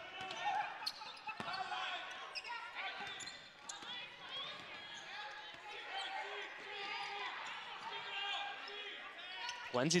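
Basketball game sound on a hardwood court: a ball being dribbled, with players' calls and crowd chatter mixed in.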